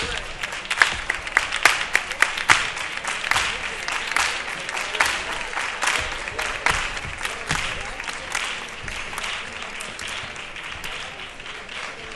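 Audience applauding: a dense mass of clapping hands, loudest in the first few seconds and then slowly easing off.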